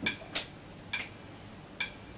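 Three short, sharp clicks from the Korg Havian 30 keyboard, unevenly spaced, just before the bossa starts playing.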